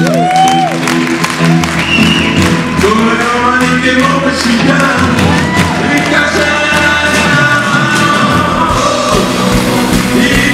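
Live rock band with electric guitars and drums playing a song, with voices singing over it.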